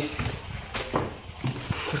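Several irregular knocks and scuffs, footsteps and movement about a ship's cabin.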